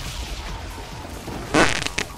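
A loud fart sound effect about one and a half seconds in, lasting about a third of a second, over a low background film score.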